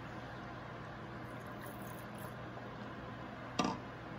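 Quiet, steady room hiss, with one brief short sound near the end.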